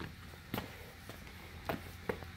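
Quiet workshop room tone with a low steady hum, broken by two faint short knocks about a second apart.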